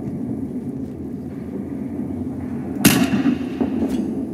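A low, steady rumble of battle ambience, then a single loud gunshot about three seconds in that echoes away, and a fainter crack just before the end.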